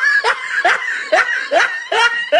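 A person laughing in short, evenly spaced bursts, about two a second, each rising in pitch.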